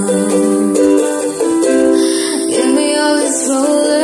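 Ukulele playing chords steadily, the chords changing every second or so.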